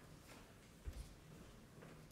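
Near silence: faint room tone with a few soft rustles and one low thump about a second in.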